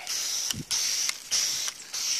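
Foam gun spraying car-wash soap onto a car's door: a steady hiss broken by a few short dips, with a dull thump about half a second in.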